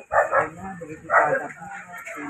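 A dog barking and yipping a few short times among people's voices.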